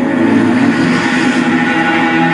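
A film trailer's soundtrack playing from a tablet: a loud, steady mix of sustained low tones and a rushing noise, with no dialogue at this moment.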